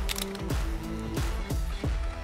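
Background music with sustained chords and a steady beat of low drum hits, about three a second.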